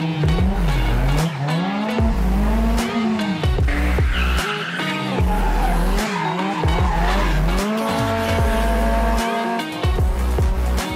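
Toyota AE86 with its 1.6-litre 4A-GE engine drifting: the engine revs up and down about once a second, and the tyres squeal through the slide, loudest about four to five seconds in. Background music with a pulsing bass plays underneath.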